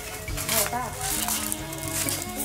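Plastic bags crinkling and rustling as bagged bread loaves are handled, over background music with held low notes.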